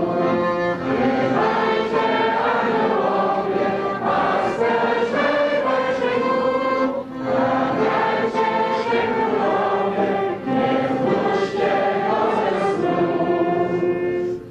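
A group of voices singing a Polish Christmas carol (kolęda) together in phrases, with brief breaths between lines.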